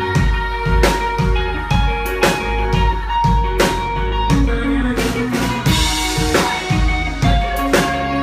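Rock band playing live: a drum kit beat over long held keyboard notes and bass.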